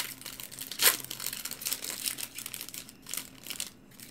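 Foil baseball card pack wrapper being torn open and crinkled: a dense crackling with one sharp rip about a second in, dying down near the end.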